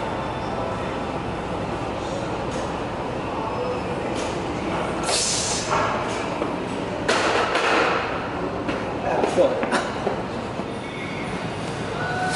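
Steady gym room noise through a heavy 435 lb paused low-bar barbell squat, with loud, breathy bursts from the lifter about five seconds in and again between seven and eight seconds. The loudest sounds come just after nine seconds, as the lift is finished.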